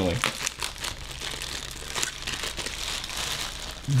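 Clear plastic packaging bag crinkling as it is handled and opened, a dense run of short, irregular crackles.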